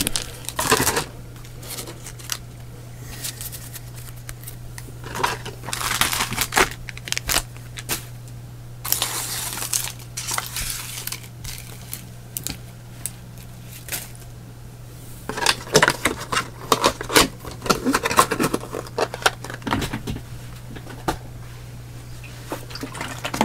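Trading cards, foil booster packs and cardboard booster boxes being handled on a table: rustling and crinkling with light knocks and clicks, in several bursts with pauses between, the busiest stretch near the end. A steady low hum runs underneath.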